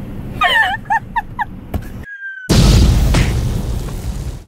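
A man's high-pitched laughter in short beats over the road noise of a truck cab. After a sudden cut comes a brief high tone falling slightly in pitch, then a loud boom-like blast of a title-card sound effect that slowly fades.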